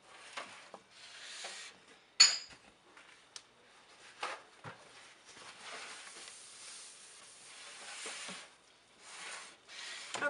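Gloved hands moving plastic pitchers, paper towel and a wooden soap mold with a plastic divider about on a steel worktop. A sharp, ringing clack comes about two seconds in, then a few light knocks and long rubbing, scraping noises.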